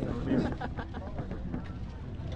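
Outdoor street-market background: faint voices early on over a low steady rumble, with a few small faint ticks.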